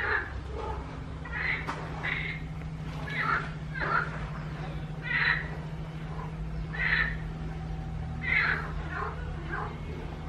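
An animal calling over and over, about ten short calls each lasting a fraction of a second, spaced a second or so apart, over a steady low hum.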